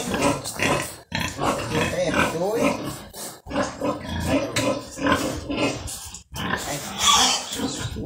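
A pig grunting repeatedly, the sound breaking off sharply for a moment three times.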